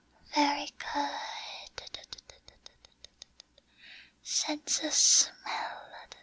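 A woman whispering and speaking softly close to the microphone. Between two phrases there is a quick run of soft clicks, about six a second, lasting roughly two seconds.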